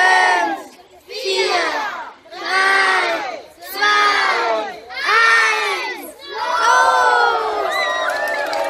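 A group of children shouting in unison in a rhythmic chant: a loud call roughly every 1.2 seconds, six in all, the last one drawn out longer.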